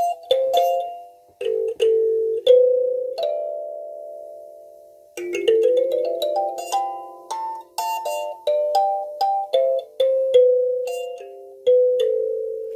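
Kalimba (thumb piano) playing a slow melody of plucked notes that ring and fade, sparse at first and then quicker from about halfway through.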